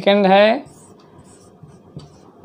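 A man's voice speaks briefly at the start, then a marker pen scratches faintly on a whiteboard as letters are written.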